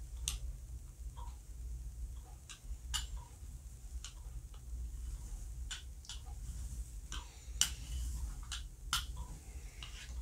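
Hand brayer rolled back and forth over acrylic paint on a gel printing plate, giving irregular light clicks and taps, roughly one or two a second, over a low steady hum.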